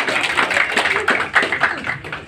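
A group of people clapping, with some voices mixed in; the clapping thins out near the end.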